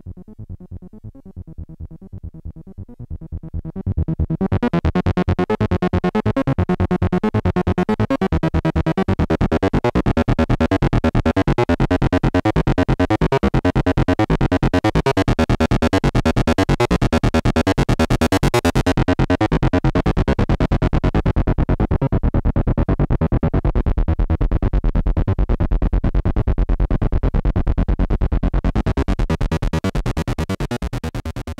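Arturia MicroBrute analogue synthesizer playing a fast repeating sequencer pattern while its knobs are turned by hand. It starts soft, jumps to full level about four seconds in, and its top end dulls past the middle, then brightens again near the end.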